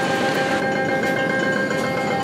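Indoor arcade din: a steady wash of machine noise with a held tone and its overtones running underneath.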